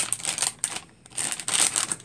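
Plastic wrapping bag crinkling as a computer mouse is pulled out of it. The crinkling comes in two spells with a brief lull about a second in.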